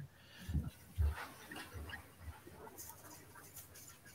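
Faint handling noises: a few soft low knocks and light scattered rustling, heard while a lot is drawn and opened in the draw.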